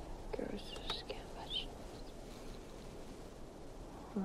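A woman whispering briefly in the first second and a half, with a couple of faint clicks, then only a low, steady background hiss.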